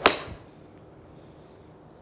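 Golf iron striking a ball off an artificial turf hitting mat: one sharp crack at impact with a brief swish after it. It is a steep, ball-first strike, the club moving six degrees down with its low point 5.2 inches past the ball.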